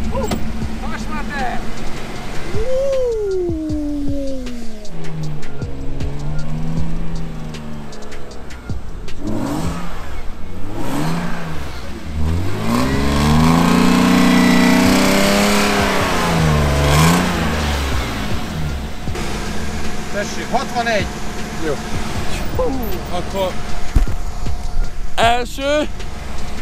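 BMW 325i straight-six engine revving up and down repeatedly as the car is thrown through a slide on snow, the pitch rising and falling several times, with the longest, loudest rev in the middle.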